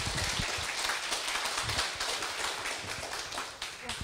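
A roomful of people applauding with many hands clapping at once, steady at first and tapering off near the end.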